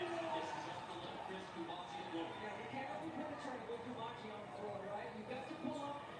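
A televised college basketball game playing through a TV's speaker: a voice talking over the busy background noise of the arena broadcast.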